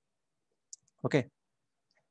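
Near silence broken by one brief, faint click about three quarters of a second in, followed by a man saying "okay".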